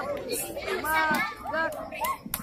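Children's voices calling out and chattering in short overlapping bursts, with no clear words.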